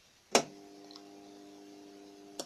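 A 12V car relay in a homemade electronic fuse clicks sharply once as the fuse is switched on, followed by a steady electrical buzz of several even tones.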